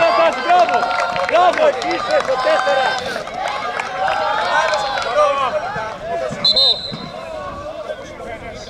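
Several voices of players and onlookers calling out over one another during a football match, with a short steady whistle blast, typical of a referee's whistle, about six and a half seconds in.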